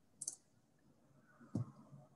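A quiet pause with two faint clicks: a short, sharp one about a quarter of a second in and a softer one about a second and a half in.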